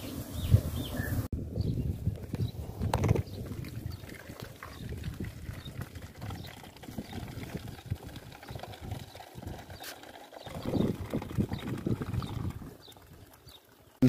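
Water from an outdoor tap running into a plastic bottle, over low, uneven rumbling, with a louder stretch about eleven seconds in.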